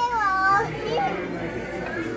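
A baby's wordless vocalizing: a drawn-out, high-pitched sound that bends up and down in the first half second or so, then a short rising call about a second in.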